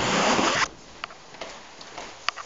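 Loud, even rasping rub of fabric against a handheld camera's microphone, stopping abruptly about half a second in. It is followed by two sharp taps.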